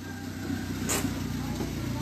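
A vehicle engine idling steadily, with a brief sharp click about a second in.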